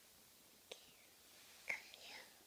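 Near-silent room with one faint click about two-thirds of a second in, then a brief breathy whisper from a young child near the end.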